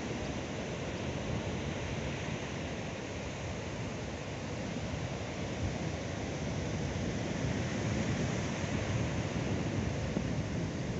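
Small surf washing onto a beach, with wind buffeting the microphone in a steady, rumbling rush that grows slightly louder in the second half.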